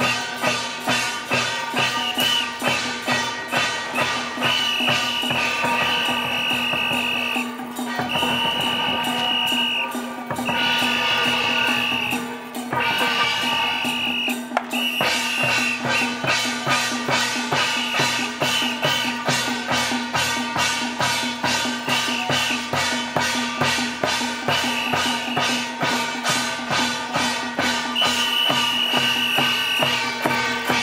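Temple-procession percussion: a hand-carried drum and brass hand cymbals beaten together in a steady rhythm of about two strokes a second. A high ringing tone comes and goes over the beat, held longest in the middle stretch.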